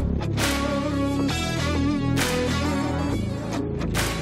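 Background music with guitar over a steady beat.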